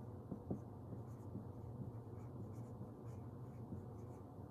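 Dry-erase marker writing on a whiteboard: a series of faint, short strokes as letters are drawn, over a low steady room hum.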